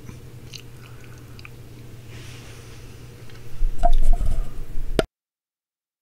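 Fingers handling a tiny plastic model part: a low hum with a few faint clicks, then louder rubbing and rumbling handling noise for about a second and a half, ending in a sharp click just before the sound cuts out to silence.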